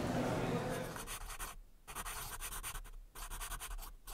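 A dry scratching sound in rapid short strokes, starting about two seconds in and breaking off briefly just after three seconds. Before it there is only faint room tone.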